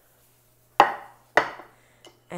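Two sharp knocks of kitchenware against a stone countertop, about half a second apart, each dying away quickly.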